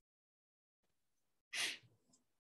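Silence, then about a second and a half in, one short, sharp breath drawn in by a man.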